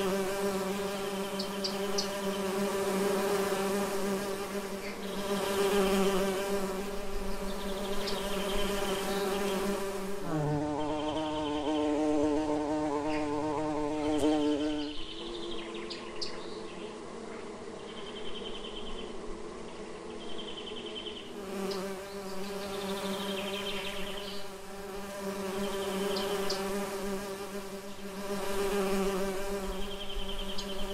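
Bees buzzing in a steady, continuous drone. About ten seconds in the buzz shifts to a higher pitch for roughly ten seconds, then drops back to the lower drone.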